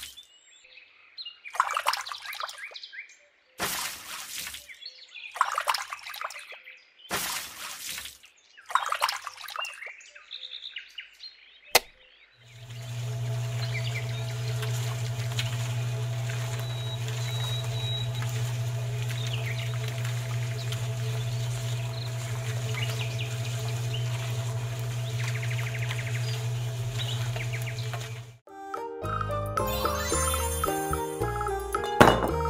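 Several short bursts of pouring, then a click and the small electric motor of a miniature concrete mixer starting up. The motor runs with a steady low hum for about sixteen seconds and stops shortly before the end.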